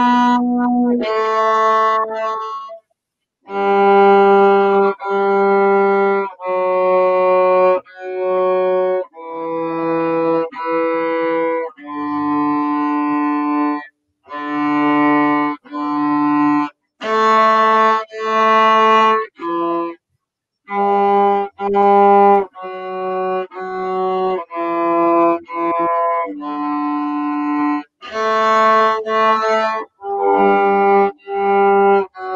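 A cello played solo: a slow melody of separate bowed notes, each held about a second. The sound drops out completely for brief moments several times.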